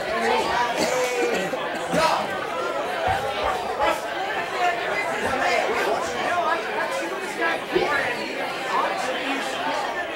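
Indistinct chatter of many people talking at once in a large, echoing room.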